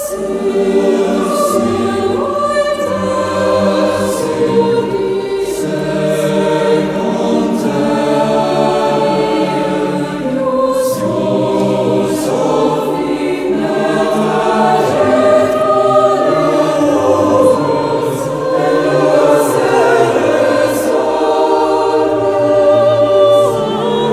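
Mixed chamber choir of women's and men's voices singing in several parts, holding long chords that move slowly from one to the next.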